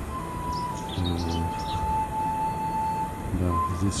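Soft background music: a slow, high melody of long held notes, with birds chirping.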